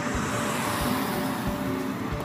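A car passing on the road, its tyre and road noise swelling and then fading, over background music with a steady beat.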